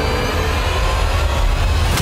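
A loud, steady rushing noise with a deep rumble underneath: a whoosh-type sound effect on a TV drama soundtrack.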